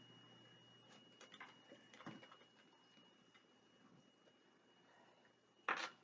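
Mostly near silence with a few faint ticks from an oracle card deck being handled, then one brief, sharper card noise near the end as a card is drawn and held up.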